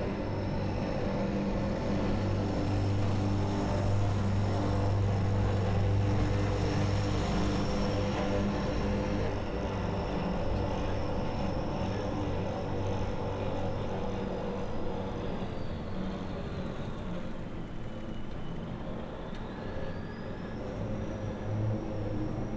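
A steady low mechanical drone with a thin high whine over it. The whine sinks in pitch and climbs back up near the end.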